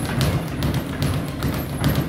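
A quick, irregular series of knocks and thuds.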